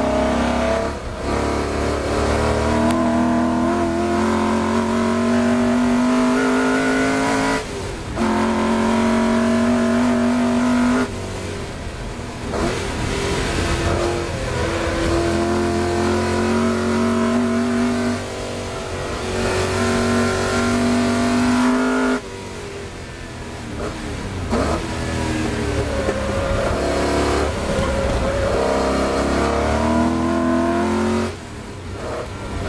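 Shelby Cobra's Ford V8 heard onboard under hard acceleration, its pitch climbing steadily through each gear. There are short breaks where the pitch drops back at the shifts, and quieter stretches where the driver lifts off, before it pulls again.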